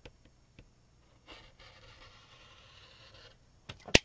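Rotary cutter blade rolling through fabric on a cutting mat, a faint scratchy hiss lasting about two seconds, then a sharp click near the end.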